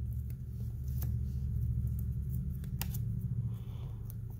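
Basketball trading cards being handled and slid from the front of a stack to the back: a few small sharp clicks and light rustles over a steady low hum.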